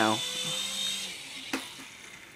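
Small electric motor and rotors of a toy indoor RC gyro helicopter whining, fading away over the first second as it drops, then a single sharp knock about one and a half seconds in as it hits the floor.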